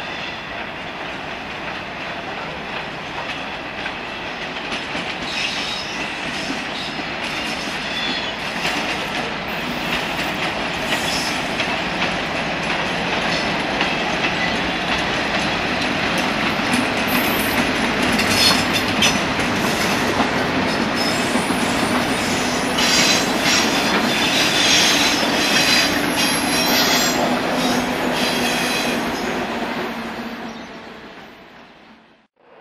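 A Class 56 diesel locomotive hauling a long train of hopper wagons past, growing steadily louder as it comes close. The wagons' wheels then rumble and clack over the rail joints as the rake rolls by, loudest in the second half.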